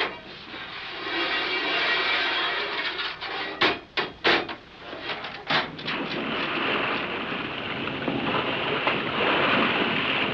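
Old-time radio sound effect of a submarine getting under way and submerging: a steady rushing of water and air, broken by a few sharp knocks in the middle.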